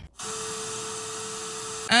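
A steady hiss like static, with one faint steady tone beneath it, starting and cutting off abruptly and lasting under two seconds.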